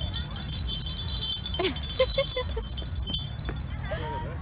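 Metal chimes tinkling, with many high ringing tones overlapping throughout, over a low rumble.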